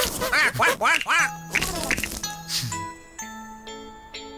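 Cartoon character sound effects: a quick run of squeaky, quack-like giggles, each rising and falling in pitch, over music. Near the end a short jingle of held, chime-like notes takes over.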